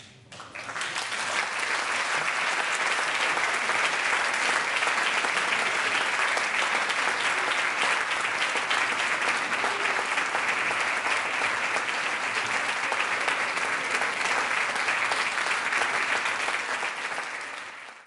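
Audience applauding: the clapping swells within the first second or two, holds steady and fades out near the end.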